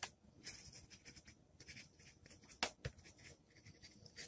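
Pen writing on paper: faint, short scratchy strokes as an equation is written out, with one sharper click about two and a half seconds in.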